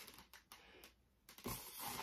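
Very quiet handling of latex modelling balloons: a few faint, scattered clicks and rubs as the twisted balloons are worked between the hands.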